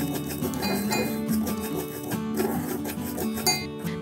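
Soft background music with plucked guitar and held tones, with a few light, high clinks over it.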